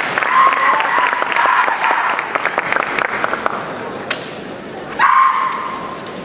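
Kendo kiai: drawn-out shouted cries from the fencers at close quarters, amid many sharp clacks. A second loud, held kiai starts about five seconds in.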